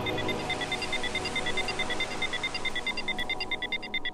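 Electronic breakbeat music from a DJ mix in a stretch without drums: steady synth tones under short high blips that repeat at an even pace and come faster in the last second as the track builds.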